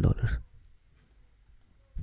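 Faint, scattered clicks of a stylus on a pen tablet while a short label is handwritten, following a spoken word at the start.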